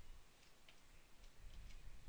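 A few faint computer keyboard keystrokes, about five separate clicks, over a low background hum.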